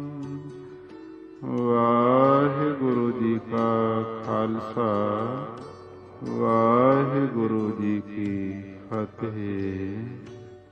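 A man singing Gurbani in Raag Todi in a slow, drawn-out melodic chant. A long held note fades over the first second or so, then phrases of one to two seconds follow with short breaks between them.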